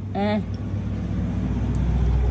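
A brief spoken "oh" just after the start, then a steady low rumble with a fine, even pulsing to it.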